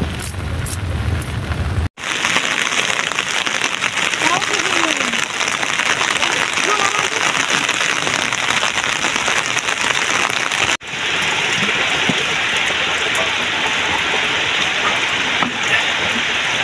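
Steady heavy rain, falling on an umbrella and on wet ground. The sound cuts out sharply for a moment twice, and a low rumble comes before the first break.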